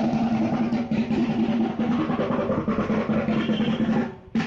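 Music of fast, continuous drumming over a steady held tone, cutting off abruptly at the end.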